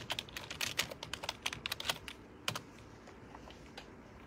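Typing on a computer keyboard: a quick run of key clicks for about two seconds, a single click about half a second later, then only a few faint clicks.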